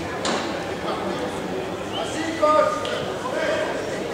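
Voices calling out across a large sports hall during a basketball game, with a sharp knock about a quarter second in and a louder call about two and a half seconds in.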